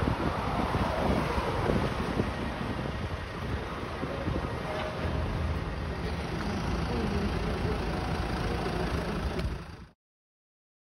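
Wind buffeting the microphone over a steady low vehicle-engine rumble, fading out just before the end.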